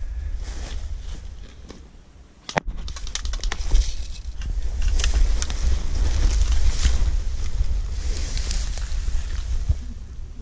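Wind buffeting the microphone in a low rumble, easing off briefly about two seconds in, with scattered sharp clicks and snaps from about two and a half seconds on.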